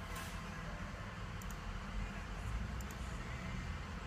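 A 2003 Ford F550's diesel engine idling at a distance: a low, steady rumble, with a couple of faint clicks.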